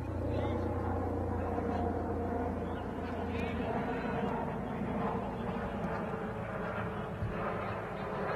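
Indistinct voices of several people talking outdoors, with no clear words, over a low steady engine rumble that fades out a little over three seconds in.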